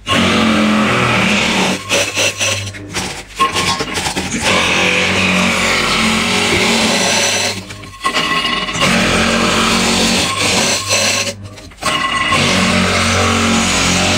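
Electric ice crusher running and grinding ice into a steel bowl: a steady motor hum under a gritty crunching, cutting out briefly twice, about eight and eleven and a half seconds in. The machine is old and turns out mostly fine, fluffy shaved ice.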